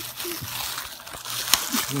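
Gift wrapping rustling and crinkling as a present is being opened, with a single sharp click about one and a half seconds in.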